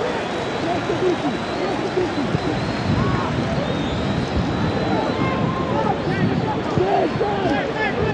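Pitch-side sound at a football match with empty stands: players and coaches shouting and calling to one another, with the thud of the ball being kicked.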